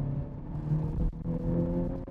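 The 2021 Honda Civic Type R's turbocharged 2.0-litre four-cylinder, heard from inside the cabin as the car drives, its pitch rising gently over road rumble, with a brief dip about a second in.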